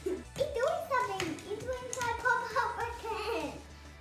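A young girl's high voice in long, drawn-out gliding tones, sung or vocalised rather than spoken.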